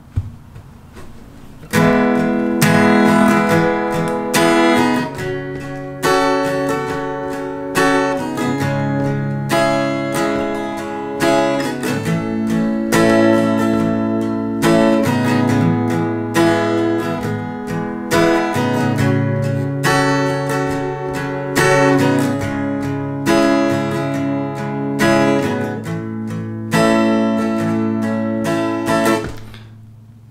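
Steel-string acoustic guitar with a capo, strummed in a steady rhythmic pattern through the song's four chords, C, D minor, A minor and F major. The strumming starts about two seconds in and stops just before the end.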